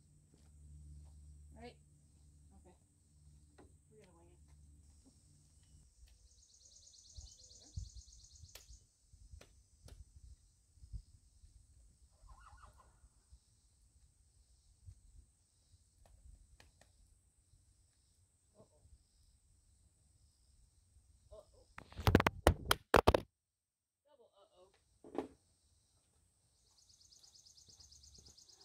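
A camera toppling over and clattering onto concrete: a quick burst of loud knocks about 22 seconds in, followed by a moment of dead silence. Earlier, mostly faint background with a distant horse whinny around 12 seconds in.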